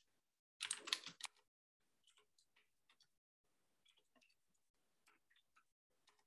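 Faint computer keyboard typing: irregular separate key clicks, after a louder short clatter of clicks about a second in.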